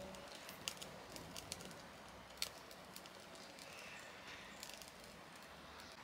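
Faint, irregular crackles and pops of wood and kindling burning in a small rocket stove.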